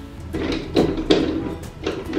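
Background music, with a few short plastic clacks as a grass trimmer's handle clamp and its bolt are fitted onto the metal shaft.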